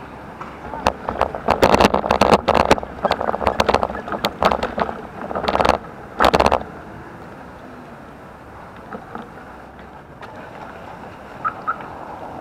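A bicycle and its mounted camera clattering and rattling over cobblestones and tram rails for about six seconds, in dense irregular knocks. Then a quieter, steady noise of tyres on smooth asphalt.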